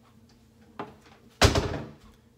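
A faint click, then about half a second later a single loud thump with a short ringing decay, as of a door, drawer or lid in a small room being shut.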